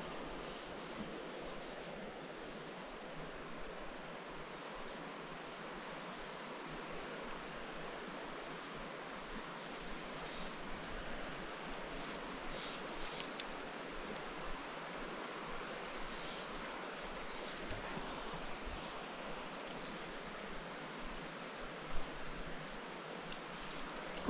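Steady hiss of a small mountain creek's water running, with a few faint brief higher hisses and one short sharp click about two seconds before the end.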